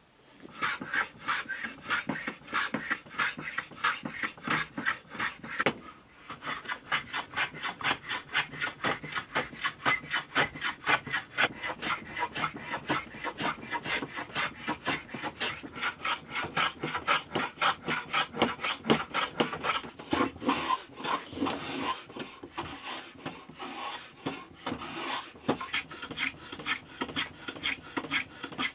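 Metal hand plane taking quick, repeated strokes along the edge of a wooden guitar head block, shaving a bevel onto it. The strokes pause briefly about six seconds in.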